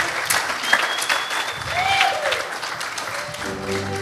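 Audience applauding. Music comes in near the end.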